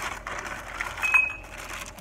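Plastic packaging rustling and crinkling as shopping purchases are handled, with a few small clicks and one brief high chink about a second in.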